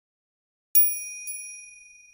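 A bright bell-like chime sound effect, struck about three-quarters of a second in and again, more softly, half a second later, then ringing on as one clear high tone that fades slowly. It marks the change from one story to the next.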